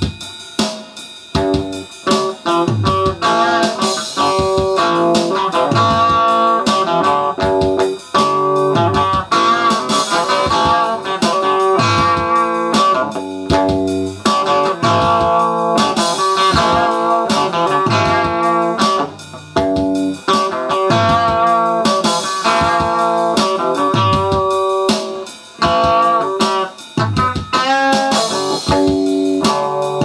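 Electric guitar playing a rock part over a steady drum beat.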